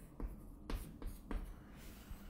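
Chalk writing on a chalkboard: a few short, quiet chalk strokes and taps, about four in the first second and a half.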